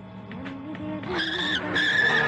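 Vehicle tyres screeching in a hard braking skid, a high shrill screech in two pulses starting about a second in, following soft background music.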